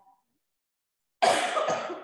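A person coughs once, sharply and loudly, about a second in, just before starting to speak.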